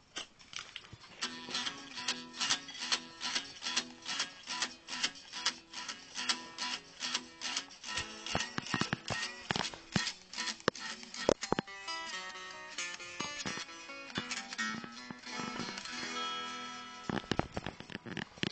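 Guitar being played: a riff of sharp, evenly paced strokes over repeating low notes, turning to denser ringing notes in the last few seconds.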